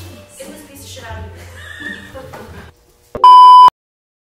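Talking over background music, then near the end a loud electronic bleep: one steady tone lasting about half a second that cuts off abruptly.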